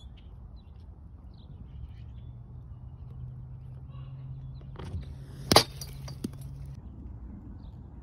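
A pitched baseball landing with one sharp, loud smack about five and a half seconds in, with a softer knock just before it and a faint tap after. A steady low hum runs under most of it.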